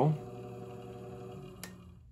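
Treadmill motor run from an SCR voltage controller, turning slowly as a faint steady hum of a few tones that gradually fades. A single sharp click comes near the end.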